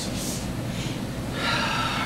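A short breath near the start, then a man's long sigh about one and a half seconds in, just before he speaks.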